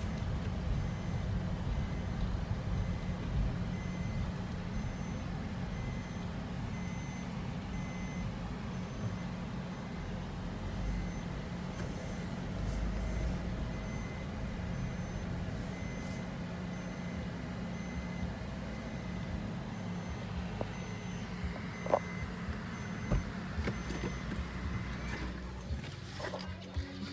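Car driving slowly, heard from inside the cabin: a steady low engine and road rumble, with a high electronic beep repeating at an even pace throughout. A sharp click sounds about 22 seconds in.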